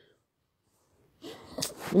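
About a second of dead silence, then a breathy noise that grows louder and runs straight into a woman's voice starting to speak again near the end.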